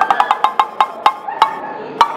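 A break in the dance music: the bass drops out, leaving a run of sharp wood-block-style percussion clicks, quick at first, then slowing and fading away.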